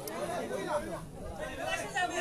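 Voices of several people talking over one another: background chatter.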